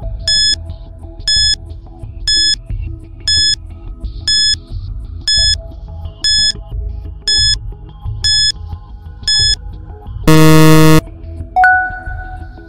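Quiz countdown timer: ten short electronic beeps, one a second, over soft background music. Then comes a long, loud buzzer tone that ends the countdown, and a bright chime as the correct answer is marked.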